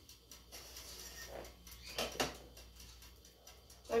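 Quiet pouring of blended corn pudding batter from a plastic blender jug into an aluminium ring mould, with a few light knocks around the middle.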